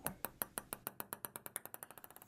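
Faint edited-in sound effect: a run of short, sharp ticks that speed up, from about four a second to about ten a second.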